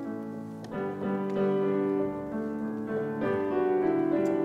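Solo piano playing a school song in slow, held chords that change about every second.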